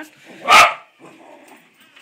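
A small dog barks once, short and loud, about half a second in, excited at a balloon held in front of it.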